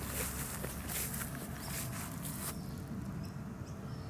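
Footsteps and rustling through long grass and weeds for about two and a half seconds. After that it goes quieter, with a few short, high chirps.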